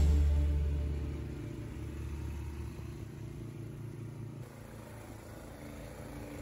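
Two-stage snowblower's small gasoline engine running with a steady low rumble, as background music fades out over the first second or so.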